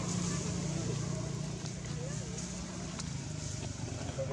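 Steady low engine hum, with faint distant voices or calls wavering above it.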